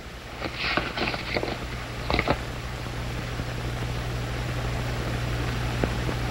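A folded paper letter rustling and crackling briefly as it is handled. A steady low hum with hiss runs beneath it and carries on after.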